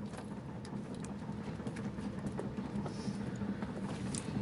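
Railway station sound effect in a radio drama: a steady low rumble with scattered light clicks and knocks, growing slightly louder as a train approaches the platform.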